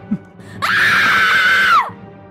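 A high-pitched scream held for a little over a second, sliding up into it and falling away at the end.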